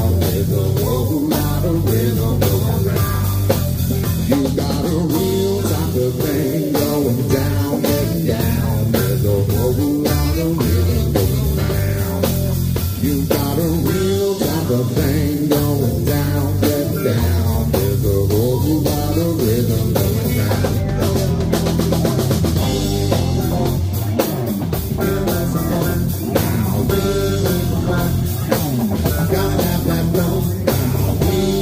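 Live rock band playing an instrumental jam: drum kit keeping a steady beat under electric guitars and keyboard.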